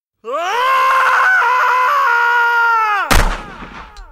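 A long human scream that rises, holds for about two seconds and falls away, cut off about three seconds in by a sudden loud bang with a rumbling tail.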